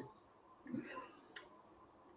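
Faint room tone with a brief low murmur just under a second in and a single short click about a second and a half in.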